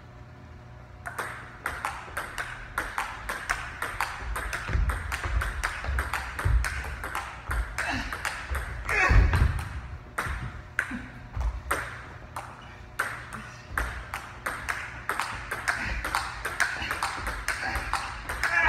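A table tennis ball clicking back and forth between paddles and table in a rally, several sharp clicks a second.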